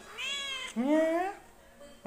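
Orange tabby cat meowing twice in quick succession: a short arched meow, then a longer one that rises in pitch.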